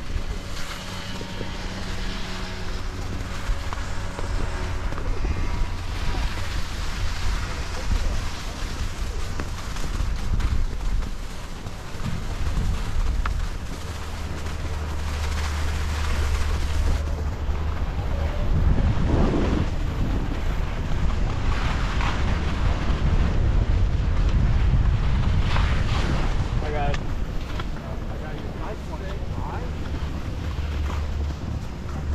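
Wind rushing over the microphone and skis scraping and hissing over packed snow during a run down a groomed slope, the noise surging and easing with the turns.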